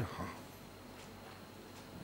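A pause in a man's speech: the tail of a spoken word at the start, then faint steady room hiss.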